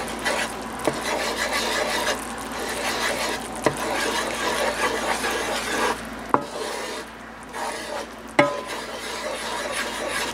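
Wooden slotted spatula stirring and scraping through a thin soy glaze sauce in a nonstick skillet, a steady rough scraping broken by four sharp knocks of the spatula against the pan.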